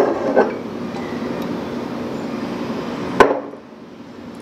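A light knock at the start and a sharp, louder knock about three seconds in, over a steady background hum.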